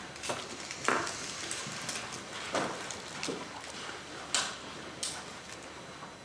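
A quiet room full of people, with scattered soft knocks, shuffles and rustles about once a second.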